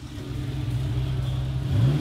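Porsche 911's air-cooled flat-six engine running at low speed as the car rolls past, a steady low hum that swells in the first half second and rises in pitch near the end as it is given a little throttle.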